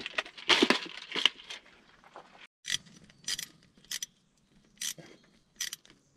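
Small metal screws clinking and rattling in a clear plastic parts organizer as it is handled and picked through, a string of short, separate clicks with quiet gaps between them.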